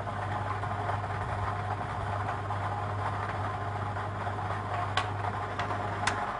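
Lottery ball-draw machine running, a steady low mechanical hum and hiss as the power pick ball is drawn, with two light clicks about five seconds in.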